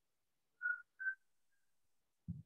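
Two short, high whistle-like peeps on the same pitch, about half a second apart, followed by a fainter third.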